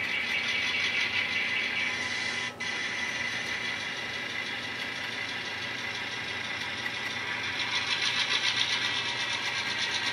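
N-scale model diesel locomotive's sound decoder playing a diesel engine sound through its small speaker as the locomotive pulls forward. The sound dips briefly about two and a half seconds in and grows louder near the end.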